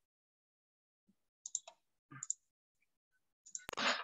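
Near silence broken by a few faint short clicks and rustles, with one sharper click near the end.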